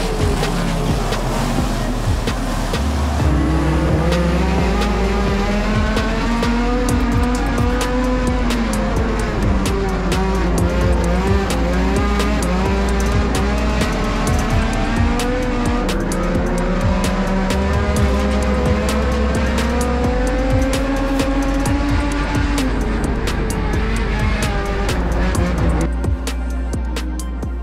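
K20-swapped Honda Civic hatchback race car's four-cylinder engine heard on board, its pitch climbing and falling in long sweeps every few seconds as it runs laps under throttle, with background music and a heavy bass line underneath.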